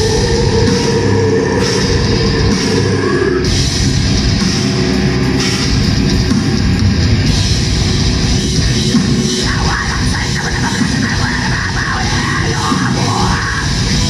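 Live heavy metal band playing at full volume: distorted electric guitars, bass guitar and a drum kit in a continuous, dense wall of sound.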